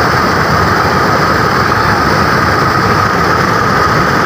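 Floodwater pouring over an overflowing anicut (small concrete check dam), a steady loud rush of falling and churning water.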